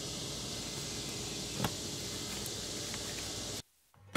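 Steady outdoor background hiss with no speech, and one faint tap about a second and a half in. The sound cuts off to silence shortly before the end.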